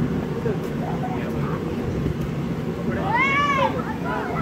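A steady low drone, typical of the electric blower that keeps an inflatable bouncy castle inflated. About three seconds in, one high cry rises and then falls.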